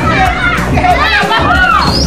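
Loud music with a steady bass, under the excited shouts and chatter of a group of people.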